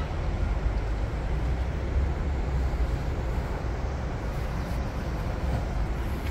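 Steady low rumble and hiss of outdoor urban background noise, with no distinct events.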